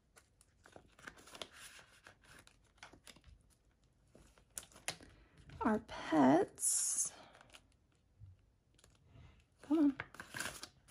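Soft rustling of paper banknotes and crinkling of clear plastic zipper pouches as cash is handled and a pouch is pulled open. A short murmured vocal sound comes about six seconds in, followed by a brief hiss of plastic.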